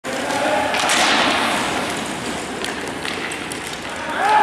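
Sledge hockey play on the ice: sled blades and sticks scraping, with a few sharp knocks about a second in and again near three seconds, and players' voices in the background.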